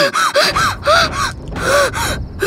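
A woman panting hard, out of breath: a rapid, uneven series of short voiced gasps.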